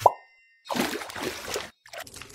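Wet face-mask paste plopping once with a quick rising pitch, then about a second of soft squelching as it is worked.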